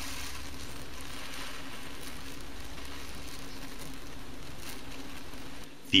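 Powdered magnesium burning in air with a steady hiss, over a faint low hum.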